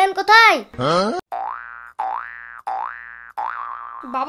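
A cartoon-style comedy sound effect: a quick upward slide, then a rising boing-like tone repeated four times in a row, each rising, holding and fading, about two-thirds of a second apart. It comes right after a short burst of high-pitched speech.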